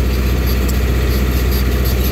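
Tractor engine running steadily, heard from inside the cab as the tractor drives across the field.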